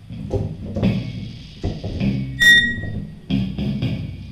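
Free-improvised music for amplified wooden board with electronics and electric guitar. Irregular knocks and low rumbling textures, with a short bright ringing tone about two and a half seconds in.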